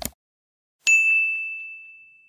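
A short mouse-click sound effect, then just under a second in a single bright bell ding: the notification-bell sound effect of an animated subscribe button, one high tone that rings on and fades slowly.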